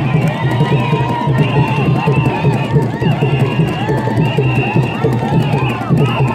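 A large group of voices singing and calling out together over crowd noise, loud and dense throughout, with a repeated high-pitched call cutting through every second or so.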